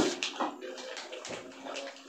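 Quiet sounds of people eating rice by hand at a table: a low, soft rustle of food being mixed on plates, with a few faint clicks of tableware.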